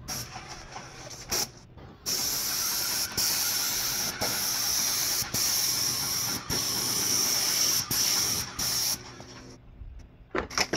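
Airless paint spray gun hissing as paint is sprayed onto house siding: a short spurt about a second in, then a long run of spraying broken by five or six brief gaps where the trigger is let off between passes.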